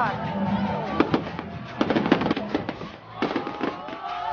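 Aerial fireworks shells bursting in a rapid, irregular series of bangs and crackles, with whistles gliding up and down in pitch near the end.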